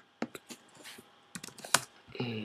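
Keystrokes on a computer keyboard: a few quick taps in the first half-second, then a second cluster near the end, the last one the loudest.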